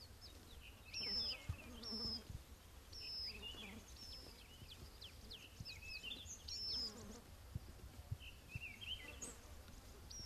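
Faint outdoor ambience of small birds chirping: short high notes and falling calls repeat about once a second, with a faint low buzz now and then.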